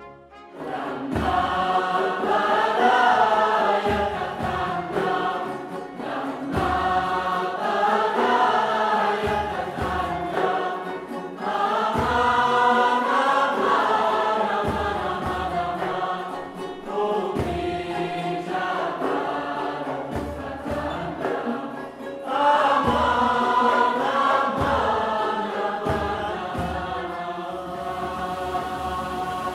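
Mixed choir singing with an orchestra, in phrases of about five seconds with short breaks between them.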